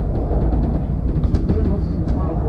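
Steady low rumble of a double-decker bus under way, heard from inside on the upper deck, with the recording pitched down so it sounds deeper than normal.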